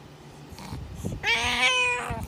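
A cat giving one drawn-out meow, starting a little past halfway through and lasting under a second.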